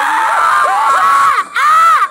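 Several children screaming together, loud and overlapping, dropping off briefly about one and a half seconds in before one more high, held scream.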